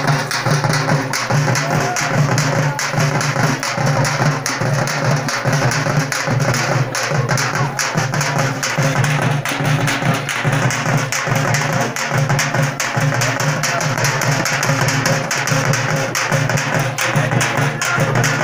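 Dappu frame drums played with sticks in a fast, steady rhythm, loud and continuous.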